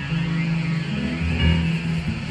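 Live rock band playing an improvised jam: electric guitar lines over sustained bass guitar notes and drums, recorded close to the PA speaker stack.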